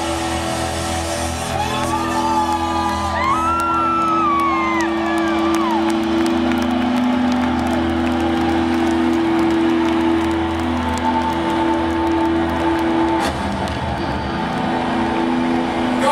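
A rock band's last held chord rings out over a large crowd cheering and whooping, with high whoops gliding up and down in the first few seconds. The chord fades near the end, leaving the cheering.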